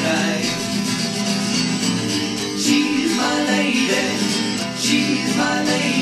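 Acoustic guitar strumming chords in an instrumental passage of a song, with no vocal.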